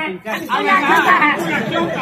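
Speech only: several voices talking over one another in stage dialogue, with no other sound standing out.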